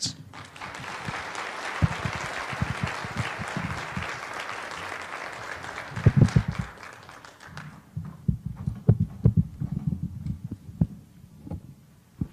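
Audience applauding, dying away after about seven seconds, followed by a run of low thumps and knocks.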